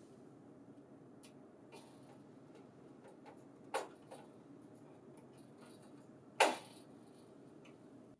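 A hand screwdriver driving a screw into a sheet-metal bracket: a few faint ticks, then two sharp clicks, one about four seconds in and a louder one about six and a half seconds in, over low room tone.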